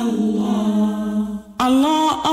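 Unaccompanied male voice chanting in long, held, slowly bending notes, with a short break about one and a half seconds in.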